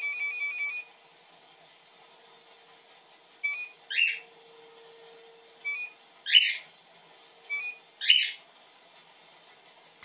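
GE combination washer-dryer control panel beeping as the Delay Wash button is pressed. A rapid run of short beeps stops under a second in. Then three single beeps come about two seconds apart, each followed by a louder falling chirp.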